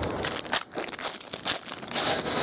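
Foil trading-card pack wrapper being torn open and crinkled by hand: a string of irregular crackles and rustles, with a short break just past half a second.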